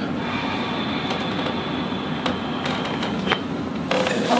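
Chiropractic thoracic adjustment done by hand pressure on the upper back: several short clicks and pops from the joints, the sharpest about three seconds in, over a steady background hum.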